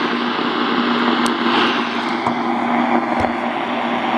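Sony SRF-59 pocket radio tuned to AM, putting out steady static hiss with a low hum running under it.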